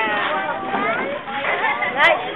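Several people talking over one another in lively chatter, the voices overlapping so that no words come through clearly.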